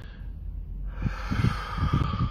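A man taking a long, deliberate deep breath, starting about a second in, as a breathing exercise.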